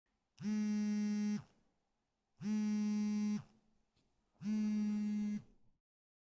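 A phone buzzing with an incoming call that goes unanswered: three buzzes of about a second each, two seconds apart, each briefly rising in pitch as it starts.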